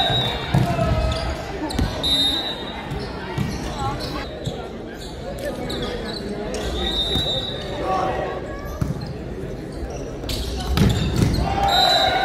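Volleyball match play in a sports hall: a ball struck and bouncing several times, with a few short high squeaks and players' voices calling out, loudest near the start and near the end.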